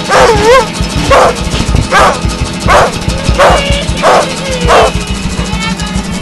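Live band music with a steady low beat, overlaid by a run of about seven short, sharp bursts, one roughly every two-thirds of a second.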